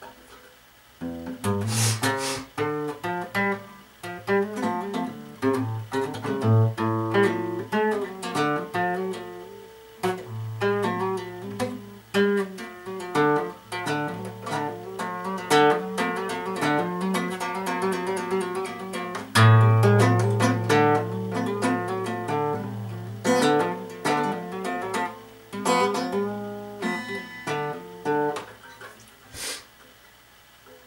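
Yamaha steel-string acoustic guitar played with the fingers, plucking single notes and chords in a slow, uneven run of practice. The playing starts about a second in and stops just before the end.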